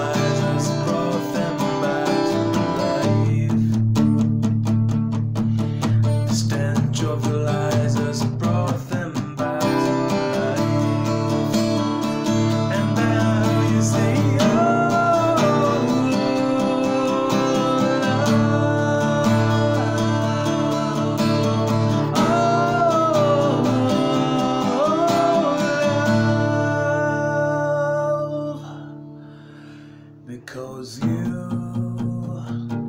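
Acoustic guitar played as a song accompaniment, chords strummed and picked steadily, with a man's voice singing softly over it in places. The playing dies away near the end.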